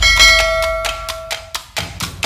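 A bright bell chime sound effect, for the click on the notification bell icon, rings once and fades out over about a second and a half, over a percussive outro music track with steady drum hits.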